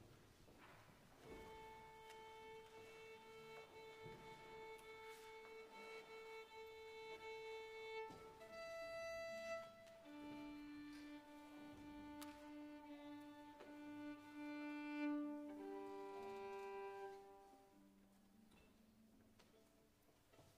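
A violin being tuned: soft, long bowed notes, one at a time and each held for a few seconds, stepping through the open strings A, then E, then D, and G near the end.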